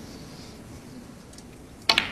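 Snooker cue tip striking the cue ball near the end, a sharp click on a topspin shot, followed almost at once by a second click as the white hits the green ball. Before that, only quiet arena hush.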